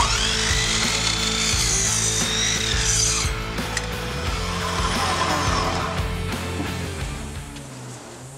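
An Evolution electric mitre saw running and cutting through a length of softwood timber. Its high motor whine shifts in pitch as the blade bites, then winds down near the end.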